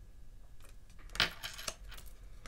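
Light clicks and taps of a Kipper oracle card being set down on a hard tabletop, the sharpest tap a little after a second in and a smaller one just after.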